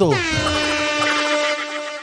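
A single long horn-like tone that slides down in pitch at the start, then holds one steady pitch for nearly two seconds.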